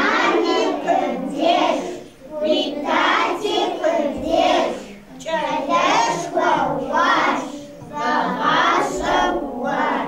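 A group of young children singing together in short phrases, with brief pauses between lines.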